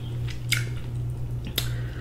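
Close-miked wet eating sounds of braised oxtail, with two sharp wet smacks about a second apart over a steady low hum.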